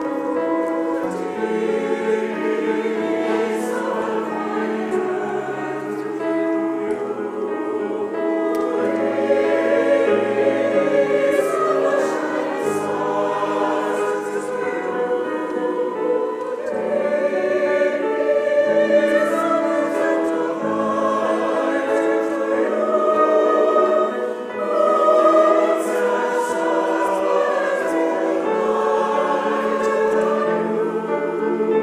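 Church choir singing in parts, many voices holding long notes that shift chord by chord.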